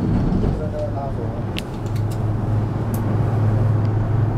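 Steady low hum and rumble inside a moving gondola cable car cabin travelling along its rope, growing a little louder about halfway through, with a few light clicks.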